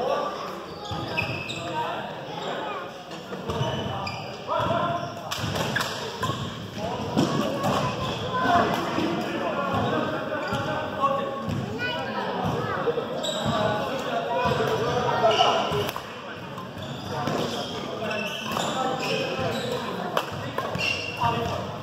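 Badminton doubles rally: racket strikes on the shuttlecock and shoe thuds on the wooden court, echoing in a large gym hall, over indistinct voices.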